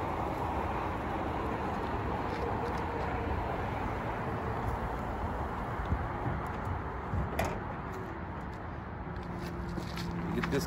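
Steady background noise with one sharp knock about seven seconds in: a wooden nuc box being handled in a pickup truck bed.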